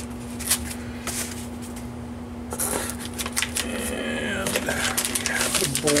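Packaging being handled: a few light clicks and taps, then crinkly rustling of a plastic anti-static bag and foam as a bagged circuit board is lifted out of a cardboard box. A steady low hum runs underneath.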